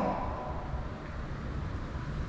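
Low, steady rumbling background noise with no speech, strongest in the bass.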